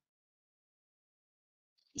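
Near silence: the dead, gated quiet of a video call between two speakers, with a voice starting right at the end.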